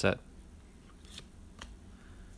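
Baseball cards being flipped through by hand: faint sliding of card stock with a couple of light snaps about a second and a half in.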